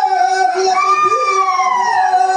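Rajasthani Gavri folk singing: a voice holds a long high note that slides down near the end, over steady held tones of the other music.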